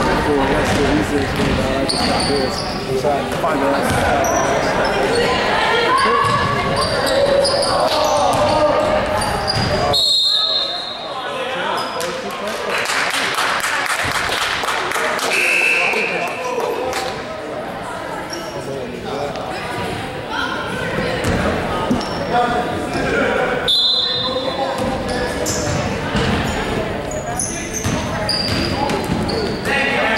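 A basketball bouncing on a hardwood gym floor amid spectator chatter, echoing in a large hall, with short high squeaks scattered through. The play and chatter quieten about ten seconds in and pick up again near the end.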